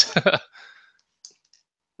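A man's short laugh, over within about half a second, then near silence.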